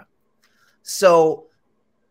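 Speech only: a single spoken word, "So", about a second in, after a brief silence.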